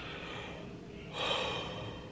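A woman yawning behind her hand, the breathy part of the yawn coming about a second in and lasting under a second.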